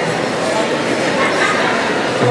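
A crowd of people talking and calling out together in a busy indoor mall, with many voices overlapping.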